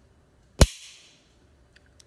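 Ruger LCP pocket pistol dry-fired: one sharp click a little over half a second in as the long trigger pull breaks and the action snaps on an empty chamber, with a short ring after it.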